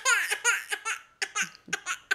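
Toddler's high-pitched vocal outburst: a falling squeal, then a run of short, quick breathy pulses.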